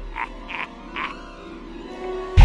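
A man's cackling laugh in short breathy bursts, three of them about a third of a second apart in the first second, then dying away.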